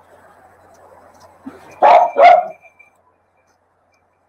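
A dog barks twice in quick succession, loud, about two seconds in.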